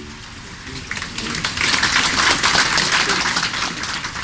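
Audience applause, many hands clapping, swelling from about a second in and easing off near the end, following a choir's song.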